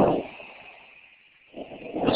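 A pause in speech on a voice-call line: the end of a word trails off, the line drops briefly to dead silence, and a voice starts again near the end.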